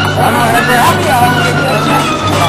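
Loud soundtrack music: a steady low bass drone under a sliding, wavering melody line.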